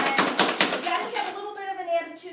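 Pampered Chef hand food chopper being pumped fast: a quick run of clacking plunger strikes, about five a second, through the first second. Then they stop and voices take over.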